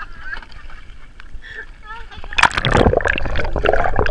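Otters splashing into a pool and swimming close past a half-submerged camera, with loud sloshing and gurgling water from about two seconds in. Before that there are a few short, high, wavering chirps.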